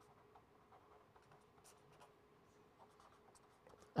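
Faint scratching of a pen writing on paper, a series of short strokes.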